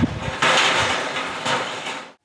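Outdoor wind rushing in gusts, with a couple of faint knocks; it cuts off abruptly at the end.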